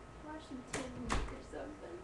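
A faint voice in short bits with no clear words, broken by two sharp knocks about a second in.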